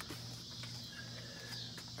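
Quiet background between speech: a steady low hum with a faint, high-pitched chirring of insects such as crickets.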